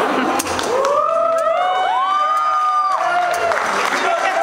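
Audience cheering, with several voices giving long high 'woo' whoops that overlap, each rising and then falling, over crowd noise.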